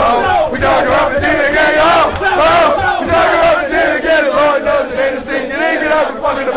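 A group of men loudly chanting a fraternity drinking song together, many voices overlapping without a break.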